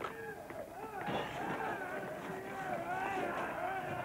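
Several men's voices shouting over one another in a physical struggle, with no clear words, all through the few seconds.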